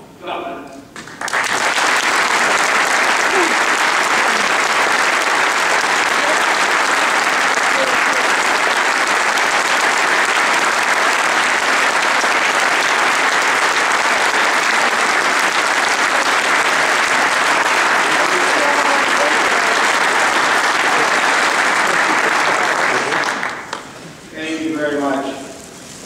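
Large audience applauding steadily, starting about a second in and tapering off near the end.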